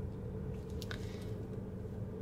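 Jeep's engine running at low speed, heard from inside the cabin as a steady low hum, with a couple of faint clicks about a second in.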